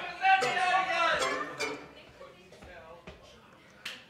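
Indistinct voices talking in a room for about the first two seconds, then a quieter stretch, with a sharp click just before the end.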